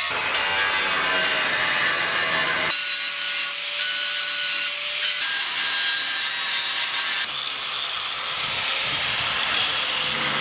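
Angle grinders grinding steel: a steady abrasive hiss with a motor whine, the pitch and character shifting abruptly a few times as one grinding shot gives way to another.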